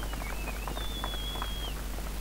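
Muffled, scattered hand clapping from a small crowd, dulled by water in the camera microphone, with a faint thin high tone in the middle.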